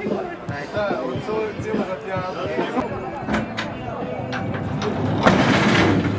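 Several people talking in the background, with no single clear voice. About five seconds in there is a louder burst of rushing noise lasting under a second, the loudest sound here.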